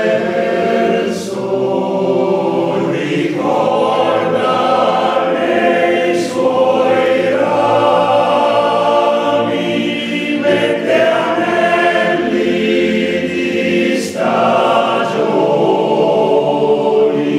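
Male-voice choir singing a piece in several-part harmony. Held chords run in phrases, broken by brief breaths and hissed consonants a few times.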